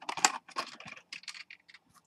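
Handling noise from fingers working close to the microphone: a quick flurry of clicks and rubs in the first half-second, then scattered light clicks.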